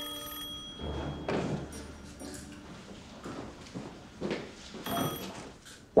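Old desk telephone's bell ringing, stopping about half a second in; then a few soft thumps like footsteps, and a short ring again about five seconds in, just before the receiver is lifted.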